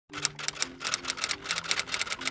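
Typewriter key-strike sound effect: rapid clacks, about seven a second, over soft music of sustained low notes.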